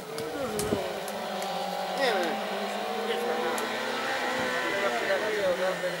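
A hatchback race car's engine revving hard through a cone slalom: the revs climb and drop repeatedly as the driver lifts and gets back on the throttle between gates.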